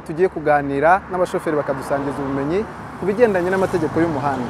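Speech only: a man talking into a handheld microphone, with a faint steady low hum beneath his voice.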